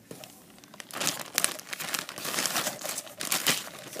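Plastic shrink wrap crinkling as hands pull it off a small cardboard kit box, in irregular bursts that start about a second in.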